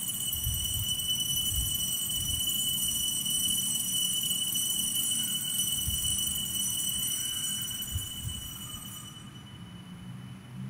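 Altar bells ringing on and on at the elevation of the chalice after the consecration, then fading away near the end.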